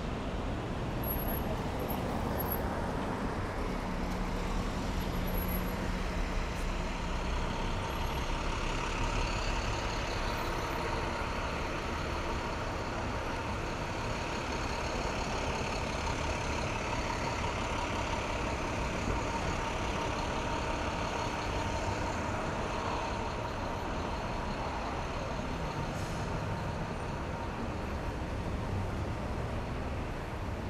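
City street traffic: car and truck engines running and tyres passing at an intersection, an even wash of road noise with a steady whine through the middle stretch.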